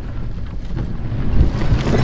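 A low rumbling noise with no clear pitch, heaviest in the bass, that grows steadily louder.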